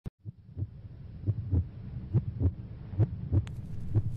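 Indian classical music fading in: deep hand-drum strokes, mostly in pairs a little under a second apart, over a steady low drone.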